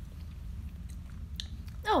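Faint close-up mouth sounds of eating and drinking, chewing with a few soft clicks, over a low steady room hum.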